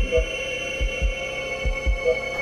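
Heartbeat sound effect: low double thumps (lub-dub), three beats in the two seconds at an even pace, over a steady high electronic hum.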